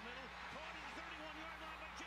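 Faint speech from the football game's original TV broadcast audio, low under a steady low hum and background noise.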